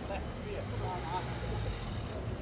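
Low rumble, likely from street traffic, heaviest from about half a second in to near the end, with a faint voice talking over it early on.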